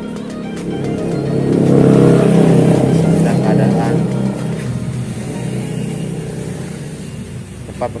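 A motor vehicle passing close by, growing louder to a peak about two seconds in and then fading away over the next few seconds.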